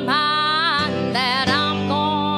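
A live gospel song: female voices sing a held, wavering melody over a band of acoustic and electric guitars and bass.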